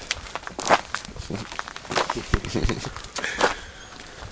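Irregular footsteps scuffing and crackling on leaf-strewn ground, with scattered rustles.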